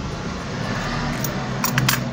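Metal scissors handled while cutting cotton cord, giving a few sharp metallic clicks in the second half, over a steady rustling hiss.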